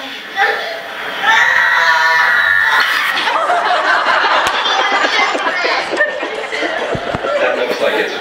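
A small child's voice from the played video clip, then an audience laughing together from about three seconds in.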